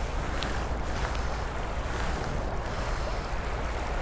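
Shallow, fast-running stream rushing over rocks in a steady wash of water, with a low rumble of wind on the microphone.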